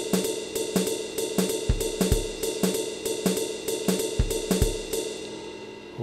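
Groove Pizza web app's 'Jazz Swing' preset playing a programmed drum beat: cymbal strikes in a swung rhythm with occasional kick drum hits. The beat stops shortly before the end, the last cymbal ringing away.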